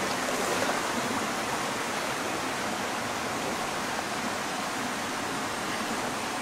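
Shallow rocky stream flowing, a steady even rush of water.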